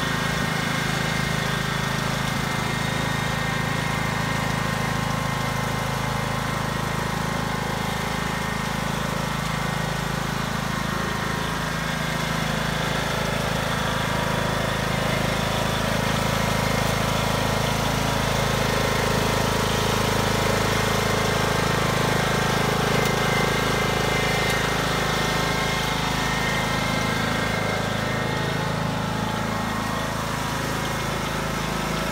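Riding lawn mower engine running steadily, a little louder for a stretch past the middle.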